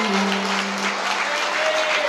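Audience applauding at the end of a song, with a low held note from the band fading out about a second in.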